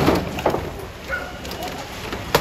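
Firefighter's axe striking a vinyl patio fence to force it: two heavy blows about half a second apart, followed by a few short high-pitched squeaks.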